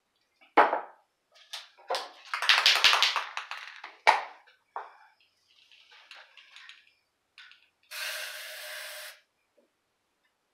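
Clattering and rattling of things being handled, including a dense rattle about two to three seconds in. Near the end, an aerosol can of spray paint sprays once for about a second, then stops suddenly.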